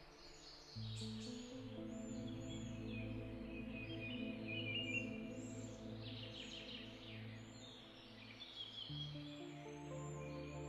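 Soft ambient background music of sustained chords, shifting to new chords about a second in and again near the end, with high chirping like birdsong over it.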